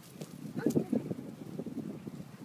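A Doberman Pinscher galloping across dry grass after a ball: a quick, irregular patter of paw falls, loudest about half a second to a second in.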